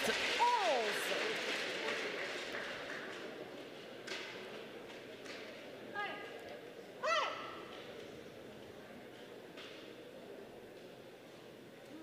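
Applause in a large sports hall dying away over the first few seconds after a point is won. Two short, high-pitched rising squeaks follow about six and seven seconds in.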